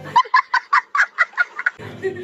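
A quick run of about nine short, high-pitched clucks, like a hen cackling.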